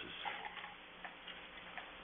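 Quiet room tone with a faint steady low hum and a few soft ticks.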